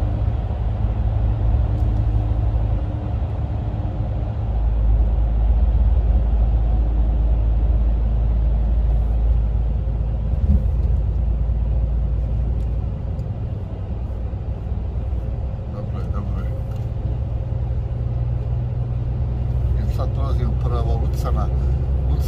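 Steady low drone of a truck's engine and tyres heard inside the cab while cruising on a motorway. It grows louder and deeper for several seconds in the first half.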